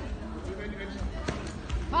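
Dull thuds of kicks and punches landing on a karate fighter's body, with one sharp impact a little past halfway.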